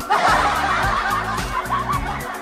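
Snickering laughter, several chuckling voices together, coming in suddenly over background music.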